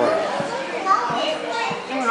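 A toddler's short, high-pitched wordless vocal sounds, with a few soft thumps of hands and feet on carpeted stairs.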